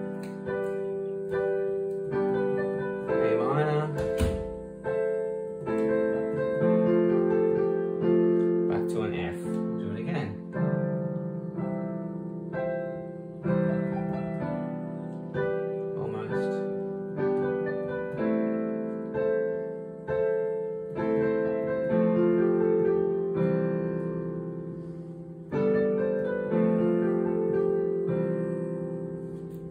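Digital piano played with both hands, improvising on a few chords in C major: struck chords that ring and fade, changing every second or two under a simple melody.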